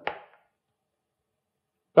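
A brief soft click right at the start, then silence.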